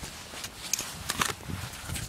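A pony's hooves walking on dirt and patchy snow: a run of soft footfall thuds, with a few sharp clicks about a second in.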